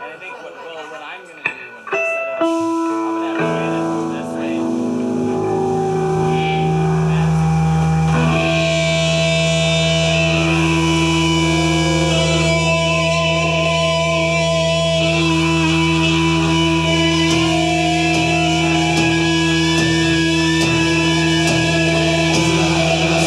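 Live band's distorted electric guitars and bass starting a piece with held notes: a single sustained guitar note about two seconds in, then a low drone joining. By about eight seconds it has built into a loud, dense wall of ringing distorted chords.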